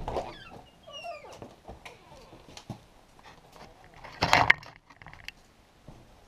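An animal whining in short high gliding cries, with a much louder cry about four seconds in and a few knocks at the start.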